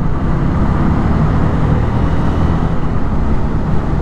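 Honda CB300F's single-cylinder engine running as the motorcycle picks up speed, mixed with a steady rush of wind over the camera.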